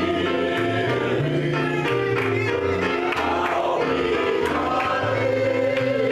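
Small gospel choir singing in several voices, accompanied by keyboard and electric guitar, with held low bass notes under the singing.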